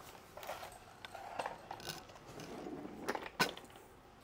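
The folding tiller of a Carryon GB-120 mobility scooter being handled and rocked by hand, giving light mechanical clicks and rattles, with a couple of sharper clicks a little after three seconds in. The play in the tiller comes from a tiller knuckle that is still loose.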